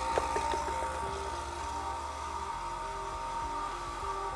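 Electric vacuum pump running steadily with a hum and a thin whine, pumping down a vacuum chamber.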